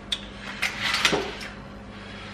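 Metal baking tray and wire cooling rack being handled and moved on a wooden worktop and board: a sharp click, then a few scraping, rattling clatters.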